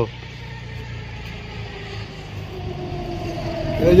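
A motor vehicle's engine running at low revs: a low, steady hum that grows louder over the last second or so. A man's voice comes in at the very end.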